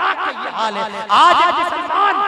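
A man's voice chanting in a melodic recitation style through a microphone, the pitch warbling rapidly up and down in a continuous line, getting louder past the middle.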